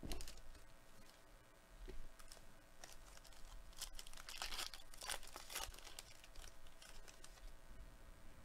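Foil trading-card pack being torn open and crinkled in the hands, a run of faint, irregular crackles and small clicks, busiest in the middle.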